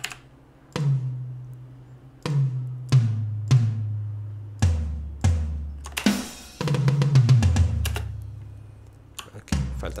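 Sampled MIDI drum toms struck one at a time, at uneven spacing, each hit ringing out. The pitch steps down from the high toms to the floor tom, with a quick cluster of hits about six seconds in.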